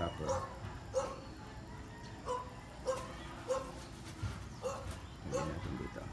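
An animal's short, sharp calls, repeated about seven times at irregular gaps, each lasting a fraction of a second.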